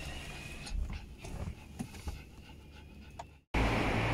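A small dog panting inside a car's cabin, over the car's low rumble with a few faint clicks. The sound cuts off abruptly near the end.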